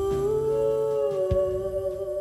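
The end of a gentle lullaby: a hummed vocal line holds long notes that step up and then settle back down, over soft, low plucked notes. The music begins to fade out near the end.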